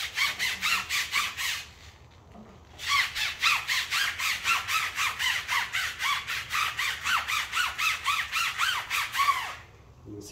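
Stiff tire brush scrubbing a foam-covered rubber tire sidewall in quick back-and-forth strokes, about four a second, squeaking on each stroke. It pauses for about a second around two seconds in, then resumes and stops just before the end.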